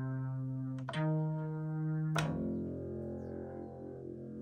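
Synthesizer notes played from a MIDI keyboard: one held note, then a new note with a sharp attack about a second in, and another just after two seconds that settles into a fuller, lower sound.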